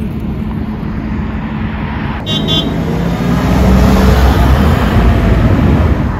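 Road traffic on a city street, with a vehicle growing louder as it passes in the second half, and a short high beep about two seconds in.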